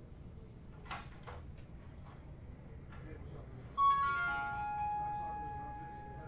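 A short chime of several bell-like notes struck in quick succession, stepping down in pitch, that ring on together and fade over about two seconds.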